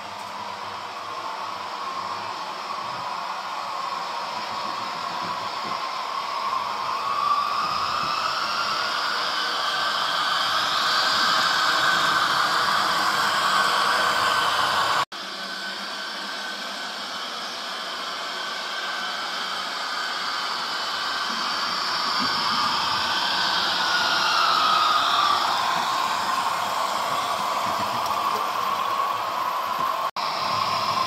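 HO scale model trains running on the layout: a steady rushing noise that swells and rises in pitch as the trains come close, then falls away. The sound cuts out abruptly about halfway through and resumes with a second, similar swell.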